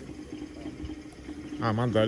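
A steady low hum with a faint hiss underneath, and a man's voice saying a short word or two near the end.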